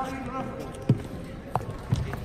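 Voices talking in a large sports hall, then two dull thuds about a second apart as a person's footsteps land on the court floor close to the microphone.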